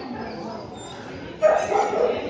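A dog barks loudly and suddenly about one and a half seconds in, over low hall chatter.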